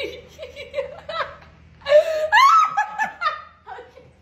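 People laughing, the laughter loudest from about two seconds in.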